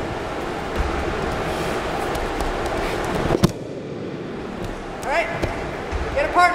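Thuds and slaps of aikido throws and breakfalls on a wrestling mat, the sharpest about three and a half seconds in, over steady background noise.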